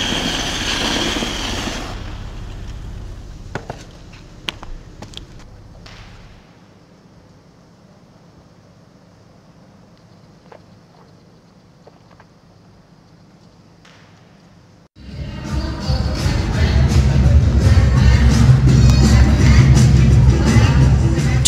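Ice-skate blades hissing across the ice, fading over the first few seconds, then a quiet indoor rink with a few faint clicks. About three-quarters of the way in, loud music with a heavy bass beat cuts in abruptly.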